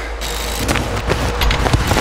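Edited soundtrack rumble: a steady deep drone under a wash of noise that swells slightly, with a few sharp clicks.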